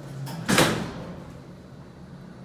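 Sliding doors of a 1968 Westinghouse traction elevator closing, meeting with one loud bang about half a second in that quickly dies away.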